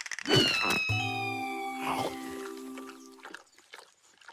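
Cartoon soundtrack: a quick swish or two at the start, then a high whistle-like tone sliding slowly downward over a held musical chord that cuts off about three seconds in.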